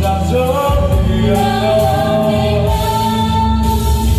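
Voices singing a song together over instrumental accompaniment, holding long notes over a steady bass.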